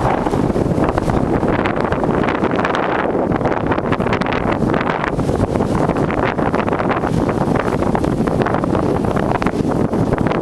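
Wind buffeting the camera's microphone during a fast downhill run through snow: a loud, steady rumbling rush with no break.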